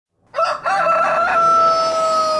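A rooster crowing. It starts about a third of a second in with a few short broken notes, then one long held note.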